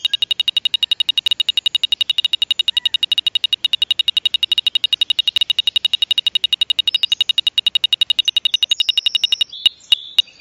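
Small homemade electronic circuit sounding a steady high-pitched buzzer tone over rapid even clicking, about eight ticks a second. Near the end the tone stops and the ticks slow to a few a second.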